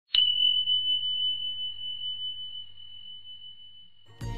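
A single high chime struck once and ringing out as one pure tone that fades slowly, with a faint low hum beneath.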